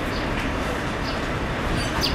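Steady rumbling vehicle noise with an even hiss, no distinct event standing out.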